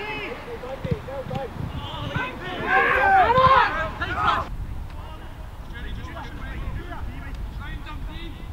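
Players' voices shouting on an open football pitch during goalmouth play, over a steady low wind rumble on the microphone. The shouting is loudest just before the middle and stops abruptly at a cut, after which only fainter distant calls remain.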